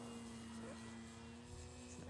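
Faint, steady drone of an E-Flite Extra 300 RC plane's electric motor and propeller flying high overhead, holding one even pitch.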